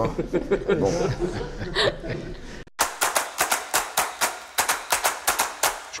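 A man chuckling and laughing over a word or two. Then, after a sudden break, about three seconds of rapid, uneven sharp clicks, several a second.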